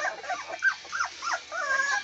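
Three-week-old American pit bull terrier puppies whimpering: a quick run of short, high-pitched whines, then a longer whine near the end.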